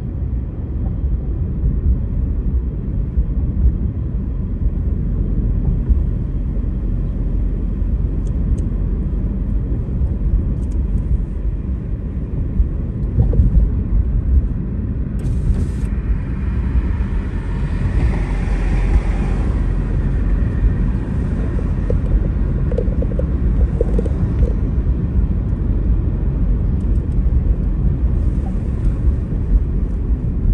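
Steady low rumble of a car driving, heard from inside the cabin: road and engine noise. A brief rise of higher hiss comes about halfway through.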